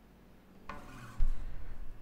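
Handling noise on an acoustic guitar as the playing stops: a hand rubbing over the strings and wooden body, with a sharp low thump a little past the middle.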